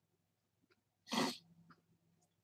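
A single short burst of breath from a person, like a cough or a sharp nasal exhale, about a second in, followed by a few faint clicks.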